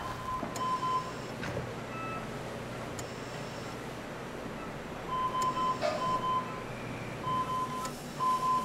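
Hospital bedside equipment alarm beeping: runs of rapid, high, single-pitched beeps about a second long at the start, again about five seconds in, and near the end, over soft background music.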